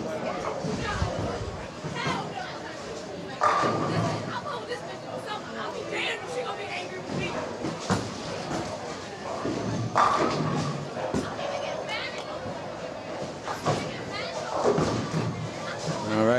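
Bowling alley din of background voices and music, broken by two sudden loud crashes about three seconds in and about ten seconds in: a bowling ball striking pins.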